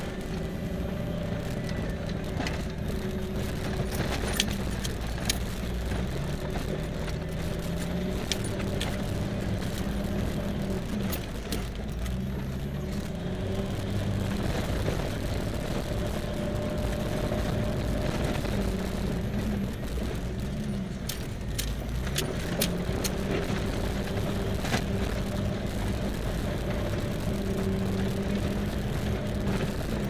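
A truck engine running at low speed on a rough dirt road, heard from inside the cab. Its pitch rises and falls as the throttle changes. Scattered clicks and rattles come from the vehicle jolting over the bumps.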